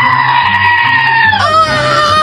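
A long, high-pitched scream held on one pitch, dropping lower about one and a half seconds in, over background music with a steady beat.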